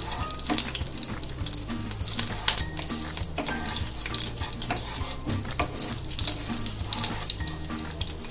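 Whole spices (cumin seeds, cinnamon, green cardamom and cloves) crackling and sizzling in hot mustard oil in a non-stick frying pan, stirred with a wooden spatula: the tempering stage, with many short, sharp pops over a steady hiss.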